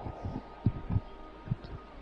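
A pause in a speech recording: a faint steady hum with several soft, low thumps scattered through it.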